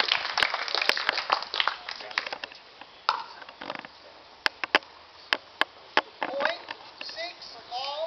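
Sharp pops of pickleball paddles striking the hard plastic ball on the courts: a dense flurry of clicks in the first couple of seconds, then several single pops. Voices call out near the end.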